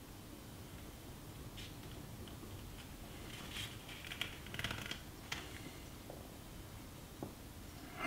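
Quiet room tone with faint handling noise: soft rustles and a few light clicks in the second half, from hands holding and moving a handheld infrared thermometer and a small hand warmer.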